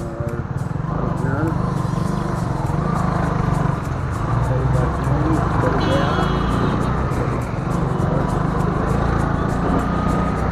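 Motorcycle riding through city traffic: a steady low engine and wind rumble, with background music and a singing voice laid over it.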